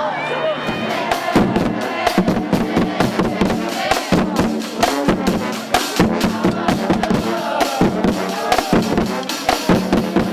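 A marching band playing: drums beat a steady rhythm over held horn notes. The drums come in about a second in, over crowd voices.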